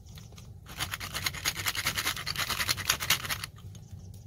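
Hand-cranked brass spice mill being turned, a rapid, even dry grinding scratch that starts about a second in and stops shortly before the end.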